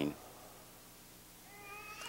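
A young child's faint, thin, high-pitched whine that rises slowly in the last half second, after a man's sentence ends at the start.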